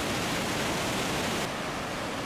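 Steady rushing roar of Montmorency Falls, a high waterfall in heavy flow. About three-quarters of the way through, the hiss turns slightly duller.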